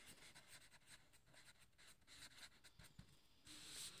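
Blue felt-tip marker writing on paper: a run of faint, quick pen strokes as a word is written out.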